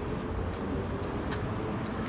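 Steady outdoor street noise with a low rumble, a faint steady hum and a few faint clicks.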